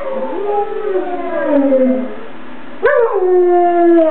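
German Shepherd dogs howling: long howls that glide up and down in pitch, then a new howl that starts abruptly about three quarters of the way through and holds a steady pitch.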